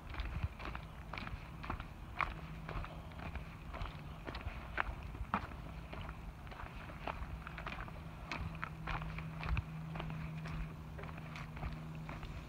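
Footsteps of a hiker walking on a dirt forest trail covered in dry leaves and twigs, at a steady pace of about two steps a second.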